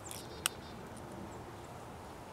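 A single sharp tap about half a second in, typical of a downy woodpecker striking a thin dead branch once while foraging. Faint high chirps come just before it, over a steady low outdoor background.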